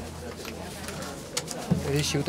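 Indistinct chatter of several people in a large meeting room, over a steady low hum, with a couple of light clicks; a closer voice starts up near the end.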